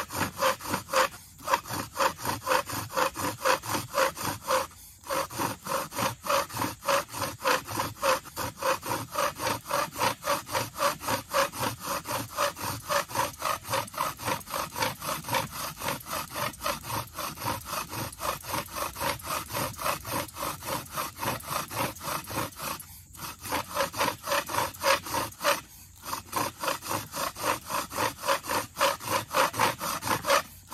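Bow drill friction fire: a paracord bow spinning a mullein spindle back and forth in a cedar hearth board, the spindle rubbing in its notch with an even, rhythmic scraping, a few strokes a second. The strokes stop briefly a handful of times: about a second in, near five seconds, and twice in the last third.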